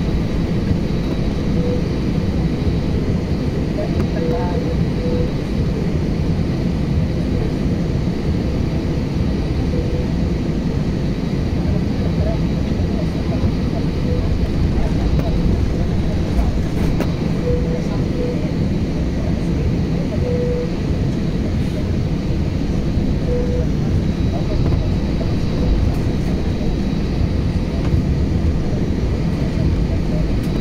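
Jet airliner cabin noise while taxiing: a steady low rumble of the engines at idle and the aircraft rolling over the pavement.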